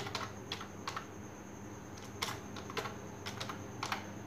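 Typing on a computer keyboard: about ten uneven keystrokes, with a pause of about a second in the middle.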